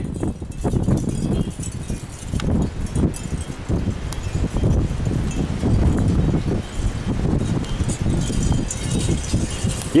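Gusty wind buffeting the camera's microphone: a low, uneven noise that rises and falls with the gusts.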